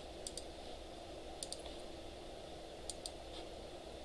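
Faint computer key clicks in three quick pairs, about a second and a half apart, over a low steady hum.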